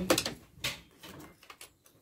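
A ring spanner being handled and set onto an injector hold-down on a diesel engine: a handful of light metal clicks and knocks that fade away toward the end.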